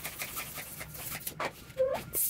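Long latex twisting balloon on a hand pump being handled, with scattered rubbery rubbing and crinkling noises and a short rising squeak near the end.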